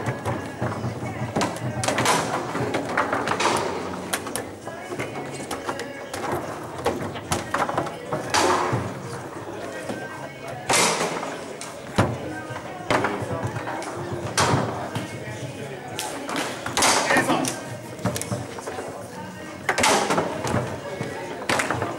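Foosball being played: irregular sharp clacks and knocks as the plastic figures strike the ball, the ball hits the table walls, and the rods bang against their stops, with a few loud hard shots.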